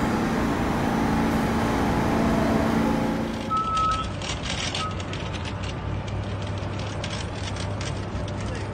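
Subway platform noise with a steady hum from an R46 train standing at the station. About three and a half seconds in it gives way to street traffic with a low steady engine hum from a bus, two short beeps and scattered clatter.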